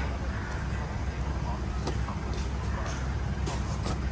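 A knife cutting into and prying apart a durian's thick spiky husk, with a few sharp clicks and taps of the blade about two seconds in and near the end, over a steady low rumble.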